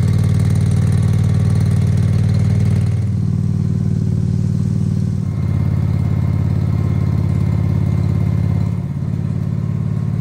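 Yard-Man garden tractor engine running steadily at a constant speed while towing a non-running John Deere 425 garden tractor. Its pitch and level shift slightly a few times.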